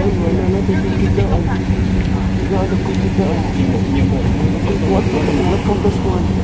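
Passenger van engine idling with a steady low hum, while people talk in the background.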